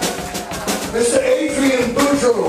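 Live Cajun-zydeco rock band playing a groove: drum kit keeping a steady beat under electric bass, organ and accordion.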